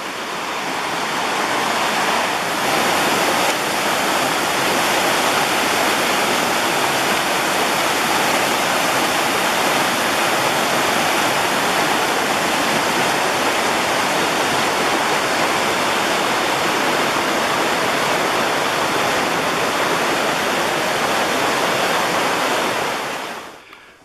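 Small river waterfall: white water rushing over rock ledges in a loud, steady roar of water that swells over the first couple of seconds and fades out near the end.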